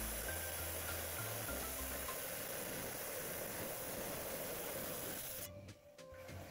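Wet diamond saw cutting through a Dryhead agate nodule, a steady grinding hiss with water spray, which stops about five and a half seconds in as the cut finishes.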